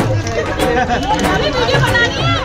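Several people chatting over loud background music with a drum beat.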